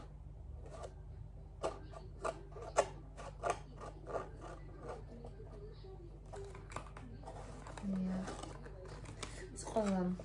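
A small cardboard product box being handled and picked open by hand: a run of short scratches and clicks of card and fingernails, with a short hum and a brief vocal sound from the woman near the end.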